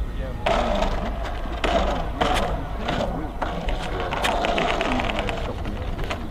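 Indistinct voices of onlookers over a steady low wind rumble on the microphone.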